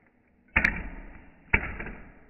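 Two sharp knocks on a wooden tabletop about a second apart, each dying away quickly.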